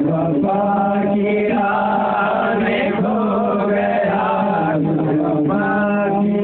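Devotional chanting of an Urdu salaam, the voices holding long drawn-out notes with slight wavering in pitch.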